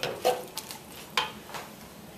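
Wooden spatula stirring and scraping stir-fry vegetables around a metal wok, a few scrapes and knocks in the first second or so, over a soft sizzle of the vegetables frying in the sauce.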